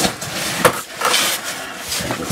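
A caver's suit and helmet rubbing and knocking against the walls of a tight rock squeeze: steady rustling and scraping with a few sharp knocks, the loudest about two-thirds of a second in.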